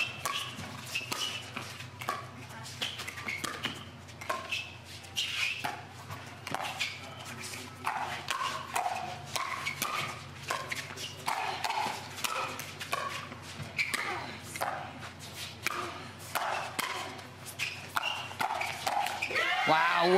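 Pickleball paddles hitting a hard plastic ball in a long rally: many sharp pops, going back and forth over the net.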